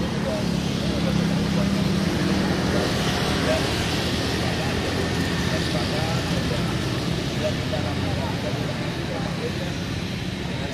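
Steady road-traffic noise with a low engine hum, under an indistinct murmur of people talking.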